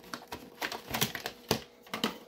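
A VHS cassette being lifted out of its white plastic clamshell case: a handful of sharp plastic clicks and knocks, about one every half second.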